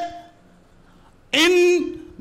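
A man speaking Hindi into a lectern microphone, with a pause of about a second before he goes on.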